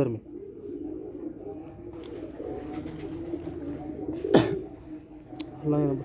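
Domestic pigeons cooing steadily, several overlapping calls at once. A single sharp knock comes about four seconds in.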